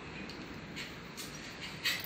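Needle-nose pliers working a wire safety pin out of a bicycle disc brake caliper: a few faint small metallic clicks and scrapes, the sharpest just before the end, as the pin comes loose.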